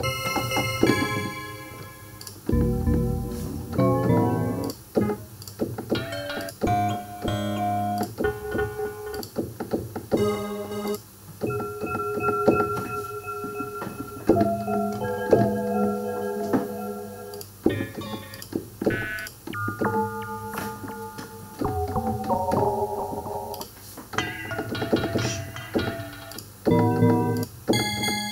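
Synth bell presets in Alchemy played on a MIDI keyboard and auditioned one after another: bell-like notes and chords, some short and some held, with the tone colour changing as presets are switched.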